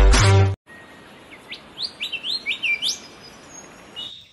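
Intro music cuts off about half a second in. Then caged budgerigars chirp, a quick series of about seven short rising chirps lasting under two seconds.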